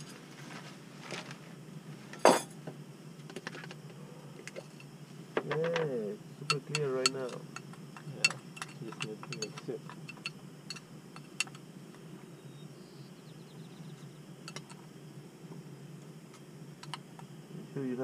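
Clinks and light clicks of a cup and plastic packets being handled beside a lit camping stove, with one sharp knock about two seconds in and a steady low burner rush beneath. A voice murmurs briefly around six seconds in.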